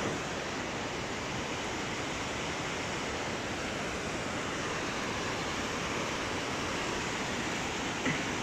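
River water rushing over rocky rapids: a steady, even hiss with no breaks.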